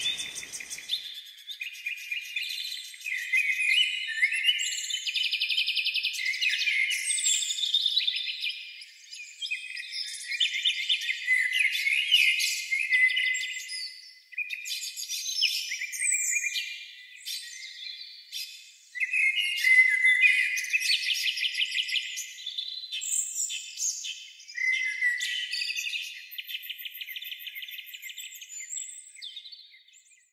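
Recorded birdsong: many birds chirping and trilling at once, with short sweeping calls and no low sound beneath them. It fades out at the very end.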